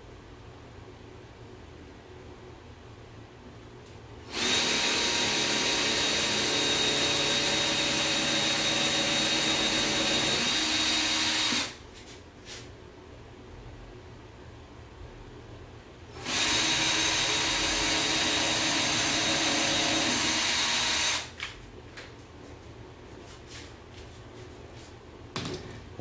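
Cordless drill boring pilot holes into an MDF drawer side for the drawer-slide screws. There are two steady runs, the first of about seven seconds starting around four seconds in, the second of about five seconds, with a pause between them. A few light clicks and knocks follow near the end.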